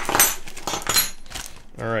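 Plastic packaging rustling and small accessories, a metal wrench among them, clinking out onto a desk in a quick run of sharp clicks.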